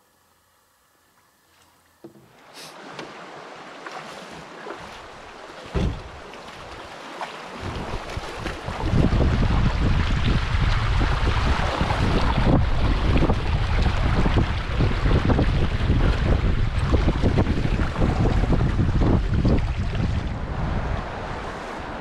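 Near silence, then river water rushing and splashing around a canoe being waded upstream through shallow rapids, with a single knock about six seconds in. From about nine seconds the sound turns loud, with wind buffeting the microphone.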